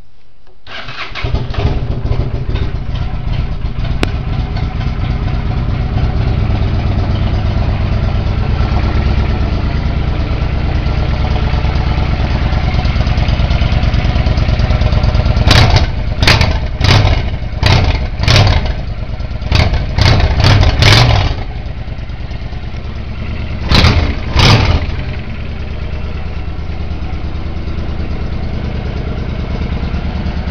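2006 Honda Shadow 750 Aero's V-twin engine, fitted with a Hypercharger air intake, starting about a second in and settling into a steady idle. About halfway through it is blipped quickly about nine times, then twice more a few seconds later, and drops back to idle.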